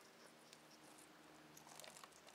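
Near silence, with faint rustling and a few light ticks as hands work apart a clump of Venus flytrap bulbs with old compost on their roots.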